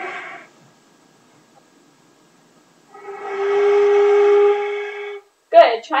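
A beginner's flute holding one steady note, a G, for about two seconds starting about three seconds in, with audible breath noise around the tone.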